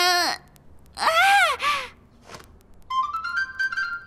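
A cartoon character's voice gives a short wordless "uh" and then a drawn-out "ah" about a second in. About three seconds in, a quick run of musical notes steps upward.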